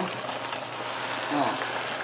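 Tomato sauce with fried tilapia bubbling and sizzling in a pan, a steady simmer.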